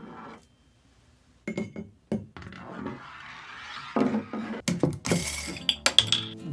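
Glass liqueur bottle handled on a wooden tabletop: quiet at first, then two sharp clicks, a soft rustling, and a quick cluster of clinks and knocks near the end.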